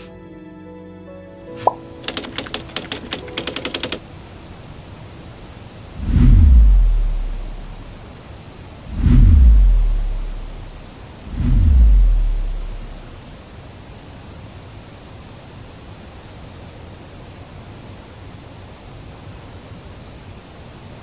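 Three deep cinematic boom sound effects, about three seconds apart, each dropping in pitch and dying away over a second or two, over a steady hiss. The tail of music and a quick run of ticks come first.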